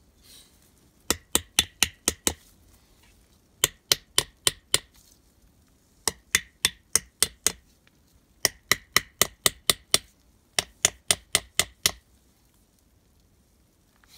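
Hand hammer blows in five quick runs of five to eight sharp strikes each, about four or five strikes a second, with short pauses between the runs.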